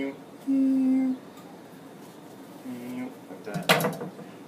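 A man humming a few short, steady notes. Near the end comes a brief, loud clatter of kitchen utensils.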